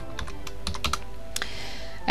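A few separate keystrokes on a computer keyboard as a number is typed into a field, over faint background music.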